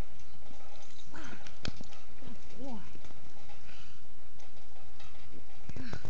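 A woman's short wordless vocal sounds, heard a few times, with a single sharp click about a second and a half in.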